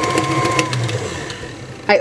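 KitchenAid tilt-head stand mixer running fast, its beater working through thick batter in a steel bowl with a steady motor hum, then switched off about a second in and winding down to a stop.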